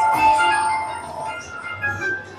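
Aristocrat Dragon Link Panda Magic video slot machine playing its electronic reel-spin music: bright chiming tones with one held note that fades after about a second as the reels come to rest.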